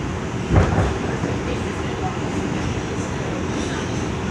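R142 subway car running along the track, a steady low rumble with one sharp thump about half a second in.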